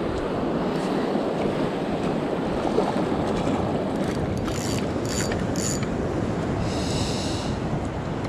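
Surf washing and wind on the microphone throughout, with a spinning reel (Penn Pursuit III 2500) being worked to bring in a hooked surfperch: its mechanism whirs and clicks in short spells between about four and seven seconds in.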